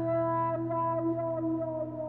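Final chord of an acoustic guitar and a lap steel guitar ringing out, the lap steel's notes held steady and slowly fading.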